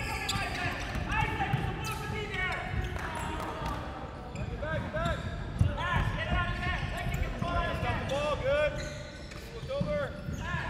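Sneakers squeaking on a hardwood basketball court in many short chirps, heaviest in two flurries, over the low thuds of a dribbled basketball and running feet.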